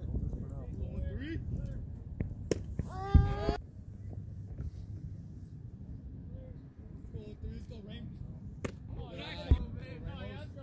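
Outdoor baseball game: a sharp crack of the ball about two and a half seconds in, followed at once by a short loud shout. Another sharp crack comes near the end, among scattered voices.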